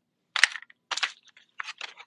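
Plastic retail packaging crinkling and crackling in about four short bursts as a packaged set of scissors is picked up and handled.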